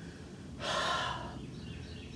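A man's audible breath in through the mouth, a short hiss lasting under a second near the middle.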